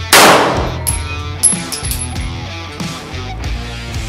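A 9mm Beretta 92FS pistol fires a loud shot just after the start, with a long fading echo. A second sharp crack follows about a second and a half in, and brief high metallic ringing comes between them. Rock music with guitars plays throughout.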